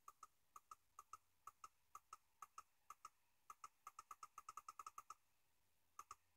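Faint computer mouse button clicks, each a quick double tick of press and release. They come about two a second, then speed up to several a second after about three and a half seconds and stop near the end.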